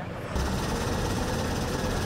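Diesel engine of a wheeled excavator running steadily, with a low rumble; it comes in suddenly about a third of a second in.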